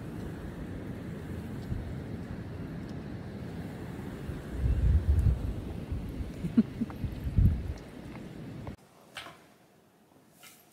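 Wind buffeting the microphone: a steady low rumble, with stronger gusts about five seconds in and again around seven and a half seconds. It stops suddenly near nine seconds.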